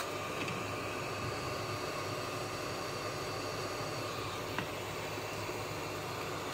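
Hot air rework station blowing a steady hiss of hot air from its handpiece nozzle, heating a laptop motherboard to desolder the BIOS EEPROM chip. A faint tick comes about two-thirds of the way through.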